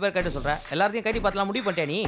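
A man speaking, with a brief hiss at the start.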